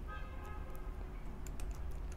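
Computer keyboard typing: scattered, irregular keystroke clicks over a steady low hum.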